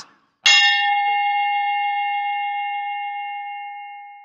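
A single bell-like ding about half a second in, one clear tone with several higher overtones, ringing on and fading slowly over about four seconds. It is an edited-in sound effect over a picture transition.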